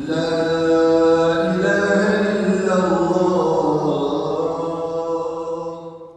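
A voice chanting in long, drawn-out held notes that slide slowly from pitch to pitch, dying away near the end.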